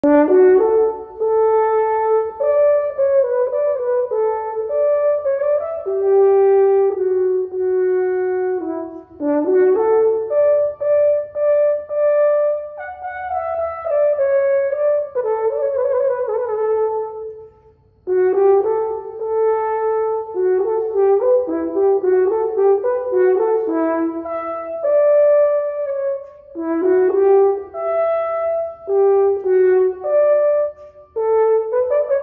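A French horn played solo: a melodic passage of held and moving notes, with a short break for breath a little past halfway.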